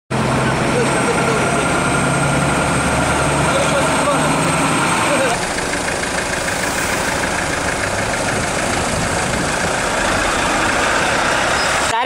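A vehicle engine running at idle, with indistinct voices under a loud, steady background of noise. About five seconds in the sound changes abruptly: the engine hum drops away and the steady noise carries on.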